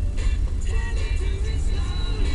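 Music with a sung melody, from the car's radio, over the steady low rumble of the moving car's engine and tyres inside the cabin.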